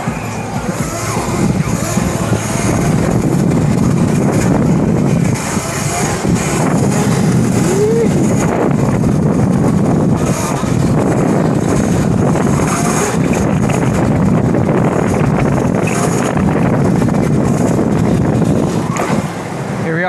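Steady rush of wind on the microphone and tyre noise from riding an electric bike down a city street, loud and continuous throughout.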